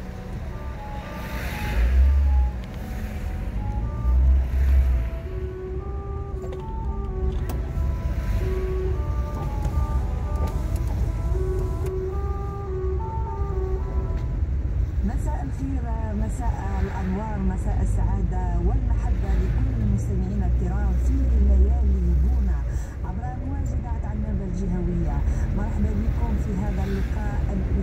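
Car driving at night, its engine and road noise a steady low rumble, with two heavy low thumps a few seconds in. Over it, music plays with a steady melody for the first half, then a voice comes in from about halfway.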